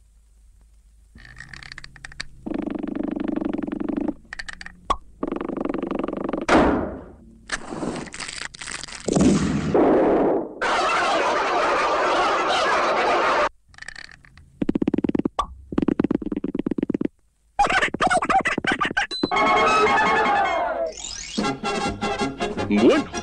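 Cartoon soundtrack of music cues and sound effects in short separate segments broken by brief gaps. About six and a half seconds in, one sound glides sharply down in pitch, and there is a longer noisy stretch from about eleven to thirteen seconds.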